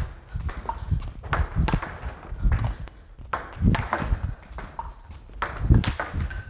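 Table tennis rally: a celluloid-type ball clicking off the rackets and bouncing on the table in a steady rhythm, as half-high balls are attacked with the forehand.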